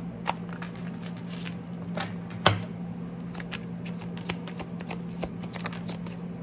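Tarot cards being handled and shuffled by hand: a run of light irregular clicks and flicks, with one sharper snap about two and a half seconds in, over a steady low hum.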